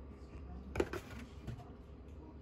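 Handling of a plastic gallon vinegar jug on a stone countertop as it is picked up to pour. There is a sharp click about a second in and a softer one about half a second later.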